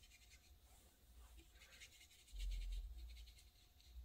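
Faint, scratchy strokes of a round watercolour brush laying plain water onto 140 lb hot-press watercolour paper, with a low rumble starting a little past two seconds in.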